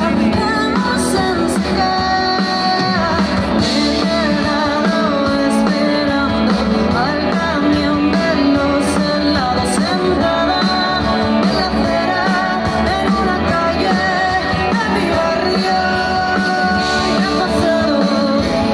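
Live rock band playing a song: a woman singing over electric guitar and drums.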